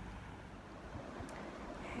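Faint, steady background noise with a low rumble and no distinct event: room tone at an edit between clips.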